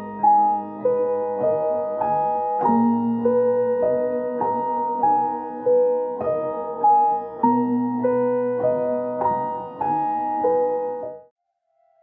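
Sampled piano loop playing back, time-stretched from four bars to eight so its chords move at half their original speed. It stops abruptly about a second before the end.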